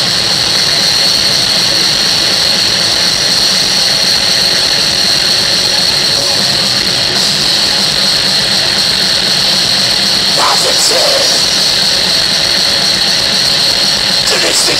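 Thrash metal band playing live with no vocals: distorted electric guitar, bass and drums merge into one loud, dense and steady wall of sound.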